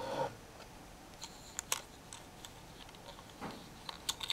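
A brief steady hum cuts off just after the start, then faint scattered clicks and taps of hands handling a small plastic 3D print stuck to the printer's glass bed.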